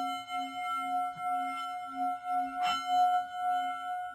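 A struck bell-like metal tone ringing on, its low note swelling and fading about twice a second, with a short knock about two and a half seconds in.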